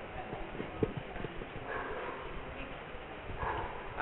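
Light scattered knocks and handling noise from a handheld microphone as it is held and passed on, over faint murmuring voices.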